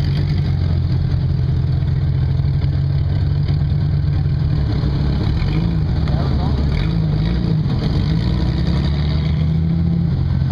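Off-road vehicle engine running steadily and loudly, its pitch wavering up and down a little in the second half as it is worked on the rocky climb.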